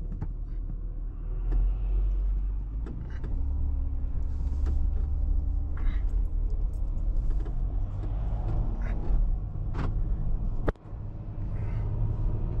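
Road noise inside a moving car's cabin: a steady low rumble of tyres and engine, with a faint engine hum drifting in pitch and a few sharp clicks or rattles. The loudness briefly drops out about a second before the end.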